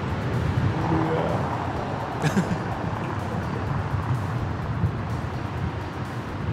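Steady city street noise with road traffic, under background music.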